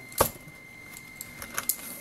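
Thin tin of a can-shaped money box being worked open by hand: one sharp metallic click just after the start, then a few light clicks.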